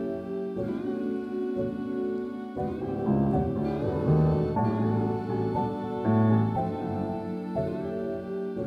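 A looped sample of sustained piano chords playing back, the chords changing every second or two, run through a tube modulation effect that gives them a slight wavering movement.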